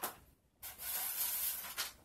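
Paper rustling and hand-handling noise as sheets are pushed aside and a lamp is set down: a scratchy rustle from about half a second in until near the end.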